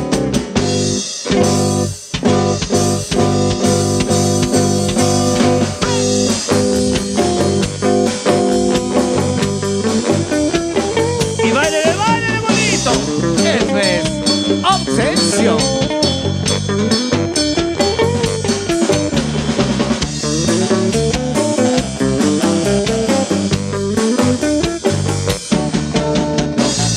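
Live band playing an upbeat rock and roll number on electric bass, drum kit and keyboards, with a steady driving beat.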